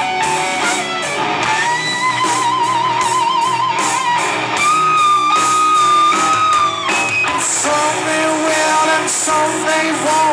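Live rock band mid-song with a lead electric guitar solo on a Les Paul-style guitar: long sustained notes with wide vibrato and string bends over drums and bass.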